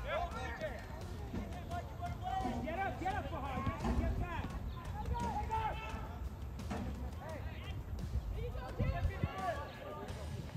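Unintelligible shouts and calls from players and spectators carrying across an open soccer field during play, over a steady low rumble.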